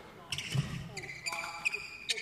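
Badminton rackets striking shuttlecocks in quick succession, several sharp hits, with court shoes squeaking on the floor from about a second in and faint voices.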